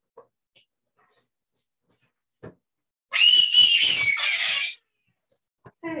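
A child's high-pitched scream, about a second and a half long, starting about three seconds in, its pitch sliding slightly down toward the end.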